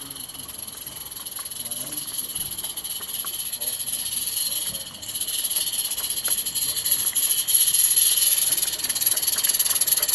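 Small live-steam garden-railway locomotive approaching, its steam hiss growing steadily louder as it nears, with faint scattered clicks.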